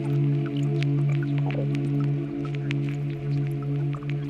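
Ambient Eurorack modular synthesizer music: a steady low drone chord held throughout, with short scattered ticks and blips sprinkled above it.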